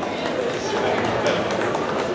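Scattered audience clapping over the murmur of a seated crowd in a large hall.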